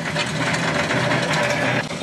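Tow truck's engine running as it pulls the car trailer forward, with a steady mechanical rattle and grind that cuts off abruptly near the end.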